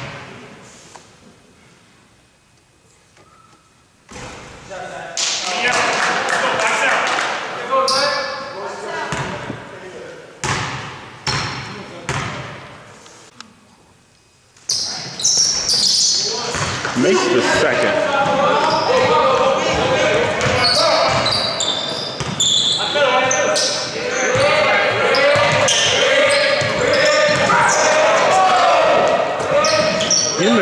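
A basketball bouncing on a hardwood gym floor, each thud ringing on in the hall, with people's voices. From about halfway on, the noise of play and voices runs steadily.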